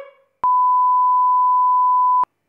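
A single steady, loud electronic beep at one pitch, a broadcast-style test tone marking a mock 'technical difficulties' interruption. It switches on abruptly about half a second in, just after a voice trails off.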